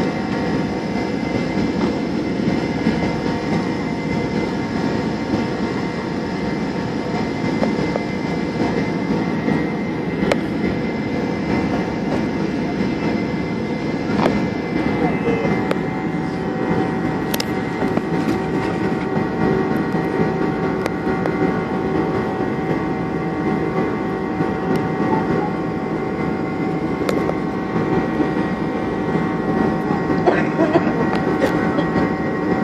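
Steady cabin noise inside a Boeing 747 climbing after takeoff: the jet engines and rushing air make an even noise with a few steady tones running through it.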